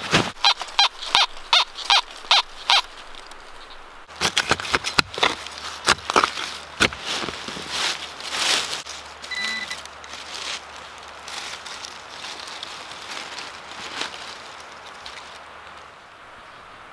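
Hand digger chopping into dry leaf litter and forest soil, with crunching leaves and scraping dirt. A quick run of sharp strokes comes at the start, with denser digging and rustling through the middle that thins out toward the end.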